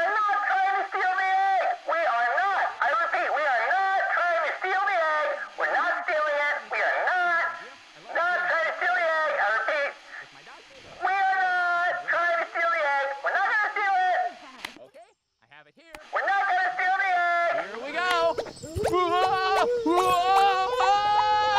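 A person's high-pitched wordless vocalizing: calls that rise and fall in pitch, broken by short pauses, with about a second of near silence about three-quarters of the way through.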